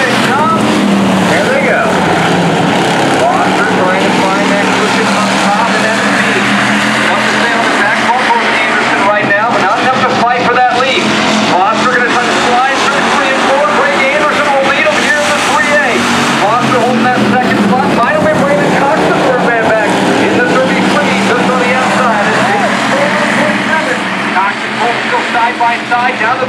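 A pack of hobby stock race cars running laps on a dirt oval, their engines sounding together in a loud, continuous drone, with voices mixed in.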